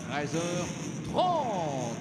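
Race commentator speaking in French, with the sound of the motorcycles on the grid underneath.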